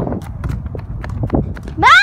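Irregular clicks of footsteps and phone handling over low rumble, then near the end a short, loud, high-pitched squeal from a child's voice that rises and falls.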